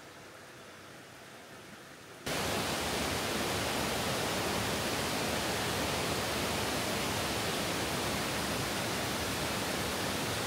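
Water pouring over the Gorge Dam's concrete spillway: a steady, loud rush of falling water that cuts in suddenly about two seconds in, after a much fainter background hiss.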